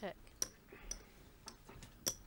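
Poker chips clicking together as a player fiddles with his chip stack, a few sharp separate clicks.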